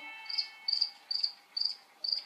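Cricket chirping sound effect, about five short, high, evenly spaced chirps, played over a television. It is the comic stock effect for an awkward silence: a question met with no answer.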